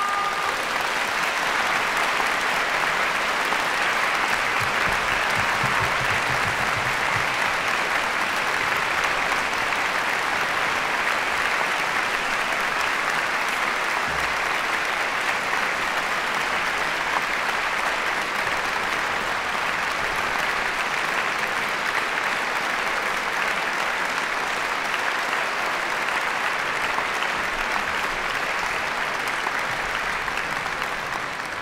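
Concert-hall audience applauding, a steady, dense clapping that keeps an even level.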